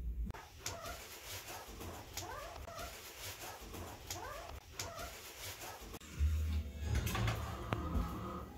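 Husky mix puppies whimpering: a run of short, high cries that rise and fall one after another. A low hum comes in near the end.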